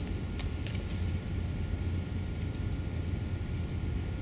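A steady low room hum, with a few faint ticks and rustles of a paper sticker being peeled from its backing sheet and handled.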